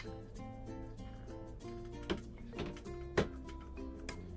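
Background music of short plucked-string notes, with a few sharp knocks, the loudest just after three seconds in.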